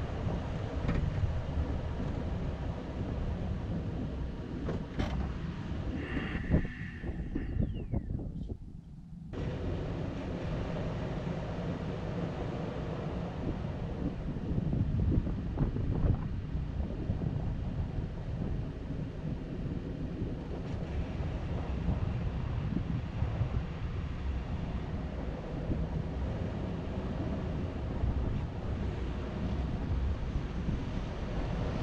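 A vehicle driving slowly along a dirt road: a steady low rumble of tyres and engine, with wind noise on the microphone. About eight seconds in the sound briefly goes dull and drops before returning.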